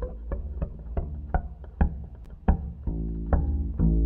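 Double bass played pizzicato: a run of plucked notes at an uneven pace, each ringing briefly.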